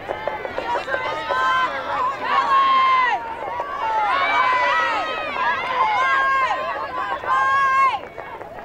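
Several high-pitched voices shouting and calling out across a lacrosse field, overlapping one another, with some calls held for a moment.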